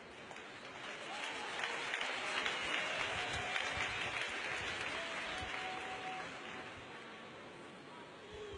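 Church congregation applauding after a shouted line of the sermon, swelling about a second in and slowly dying away, with a few faint voices in it.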